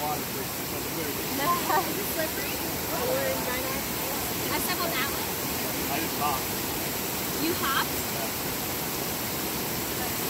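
Shallow mountain creek rushing and splashing over rocks in a steady, even rush of water. Faint voices come and go over it.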